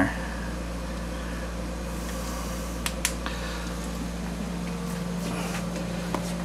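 A steady low hum of machinery, with two faint clicks about three seconds in.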